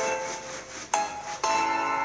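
Intro jingle of bell-like chime notes, played through a phone's speaker: notes are struck at the start, about a second in and again about half a second later, each ringing on and fading.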